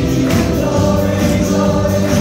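Live gospel worship song: several voices singing over held chords, with a steady beat about twice a second. The chord changes about three-quarters of a second in.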